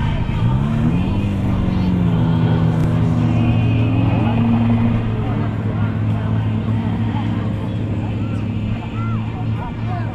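Hot rod race car engine revving up in the first second, then engine noise running steadily at low revs.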